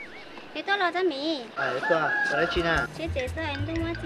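Several wavering, pitched animal calls in a row, with a low steady hum coming in about halfway.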